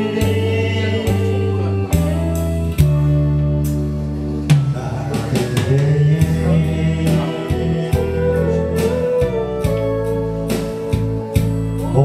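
Karaoke: a man sings a Korean song into a microphone over a karaoke backing track with held bass notes and drum beats.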